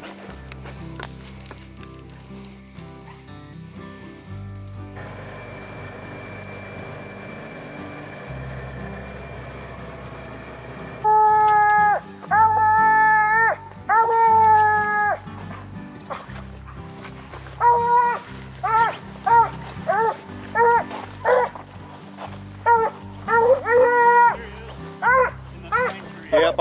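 A coonhound baying: about eleven seconds in, it gives three long drawn-out bawls, each held for about a second, then a run of short, quick chop barks.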